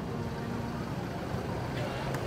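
Open-air market ambience: a steady low rumble with faint background voices of shoppers chatting.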